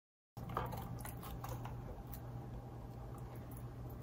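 Faint small clicks and scrapes of a screwdriver on pickguard screws and hands handling the plastic pickguard of an electric guitar, over a steady low hum. The sound opens with a brief moment of dead silence.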